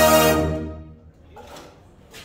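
Drum corps brass line of trumpets and mellophones holding a loud sustained chord, then releasing it together just under half a second in. The chord rings on in the room and fades over about half a second.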